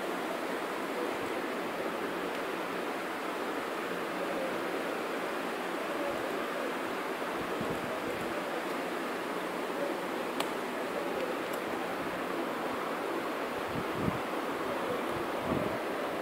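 Steady hiss of microphone and room background noise, with a single sharp click about ten seconds in.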